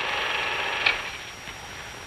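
Film projector running with a rapid, even mechanical clatter, stopping with a click just under a second in.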